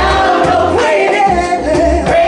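Live soul band playing: lead and backing singers singing together in a gospel style over bass and drums.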